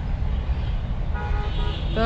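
Steady low rumble of road traffic, with a vehicle horn sounding one held, level note for about a second in the second half.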